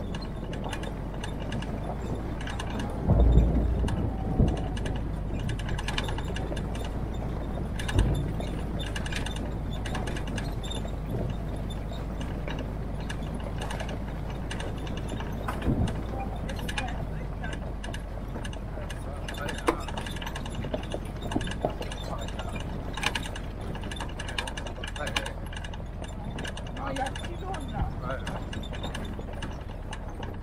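Military-style Jeep driving slowly along a bumpy dirt track: a low, steady engine drone under constant rattling and clanking from the body and fittings. A heavy thump comes about three seconds in and another at around eight seconds, as the Jeep jolts over bumps.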